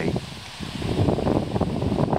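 Gusty wind buffeting the microphone outdoors, a rumbling, uneven noise that picks up about a second in.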